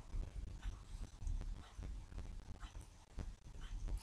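Faint low room rumble with scattered soft clicks and taps.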